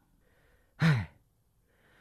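A man's short voiced sigh, falling in pitch, about a second in, between faint breaths.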